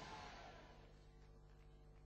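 Near silence in a large hall: the last word dies away in the room's echo, then only a faint steady hum remains.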